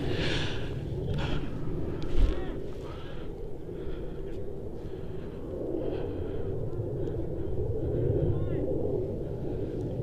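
Distant voices of players and spectators on a soccer field, faint and intermittent, over a steady low rumble of wind or crowd noise. A single short thump about two seconds in.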